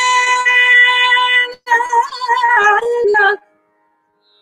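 A woman singing Carnatic vocal music unaccompanied. She holds one long note, breaks briefly, then sings a phrase that wavers in pitch as it steps downward, stopping about three and a half seconds in.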